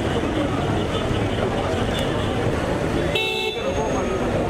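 Crowd voices and street traffic noise, with one short vehicle horn honk about three seconds in.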